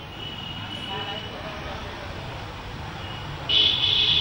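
Steady background street-traffic noise picked up by a live remote feed's open microphone, with a brief brighter high-pitched sound about three and a half seconds in.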